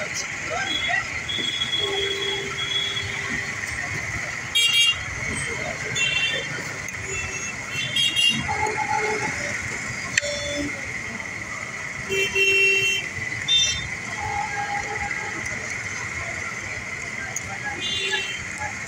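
Street traffic noise with vehicle horns tooting in short blasts about half a dozen times, over a steady background hum and distant voices.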